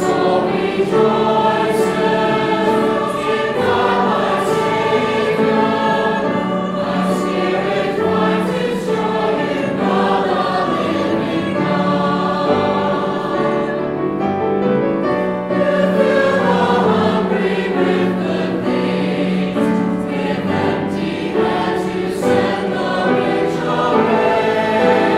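Mixed choir of men's and women's voices singing a sacred piece with piano accompaniment, the harmony moving on over a steady low held note.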